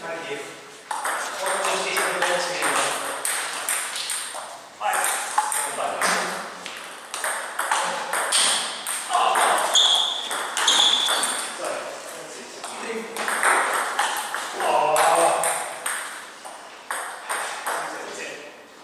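Table tennis ball clicking off bats and table in repeated rallies, with people's voices in between.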